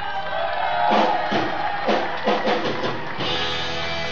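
Live rock band playing, with a drum fill of about six hits over a held chord, after which the full band comes back in a little after three seconds.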